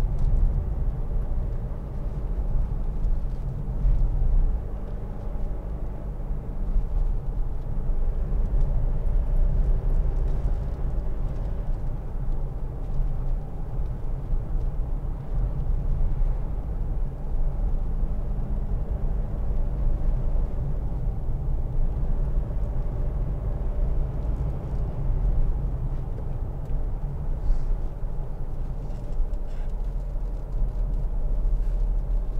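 Cabin noise of a Mitsubishi L200 pickup on the move: its 2.5-litre DI-D four-cylinder turbodiesel running under a steady low road and tyre rumble.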